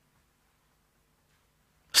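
Near silence: faint room tone in a pause between a man's spoken sentences, his voice starting again right at the very end.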